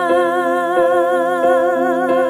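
A woman's voice holding a long sung 'oh' with a wavering vibrato, over gentle gospel-ballad accompaniment whose chords are struck about every three-quarters of a second.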